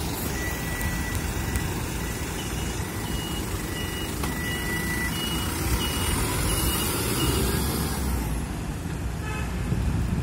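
Toyota medium-size bus pulling away from the curb, its engine running with a steady low rumble. A string of short, high electronic beeps sounds about twice a second from the bus as it moves off, and stops after about seven seconds.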